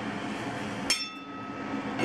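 A stainless steel pot lid clinks once on its pot about a second in, a sharp metallic knock with a ringing that fades over the next second.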